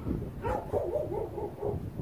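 A dog vocalizing in a quick run of about six short rising-and-falling cries, over low wind rumble on the microphone.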